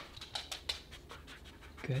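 A husky sniffing close to the microphone in quick, short breaths, several a second, as it searches for a hidden scent bag.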